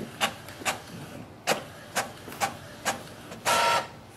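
Epson EcoTank ET-3830 inkjet printer printing a page: the print mechanism clacks in a row of sharp clicks about every half second, then gives a short whir about three and a half seconds in as the printed sheet feeds out onto the tray.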